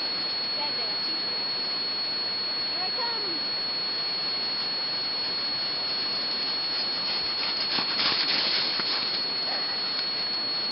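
A person sliding down a snowfield on his backside, heard under a steady hiss. The hiss swells into a rougher scraping rush about eight seconds in, as the slider comes down close to the microphone and stops. Two faint distant cries come in the first half.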